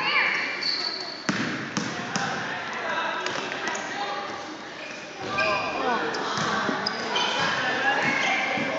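A basketball bouncing on a wooden gym floor, with sneakers squeaking and players and onlookers talking and calling out. Everything echoes in the large hall.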